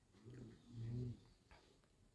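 Two short, faint human vocal sounds, like murmured utterances, in the first second.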